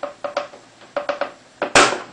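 Light clicks and knocks, each with a short ringing tone, as a cover panel on a Bang & Olufsen Beosound 3000 is handled and pulled at its bottom edge, with one louder, sharper click near the end.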